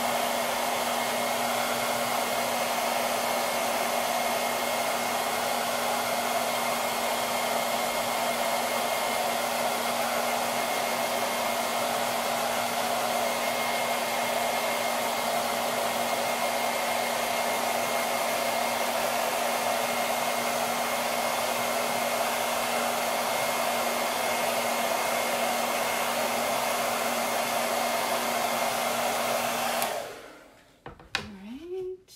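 Hand-held hair dryer running steadily on one setting, a constant airflow rush with a steady hum, blowing over a craft board to dry freshly applied paste. It is switched off at the very end.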